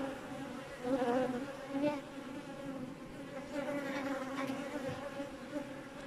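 Honeybees buzzing around a hive: a steady hum whose pitch wavers as bees fly past, swelling briefly about one and two seconds in.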